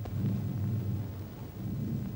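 A low rumble of thunder on an old film soundtrack, starting abruptly and continuing unevenly.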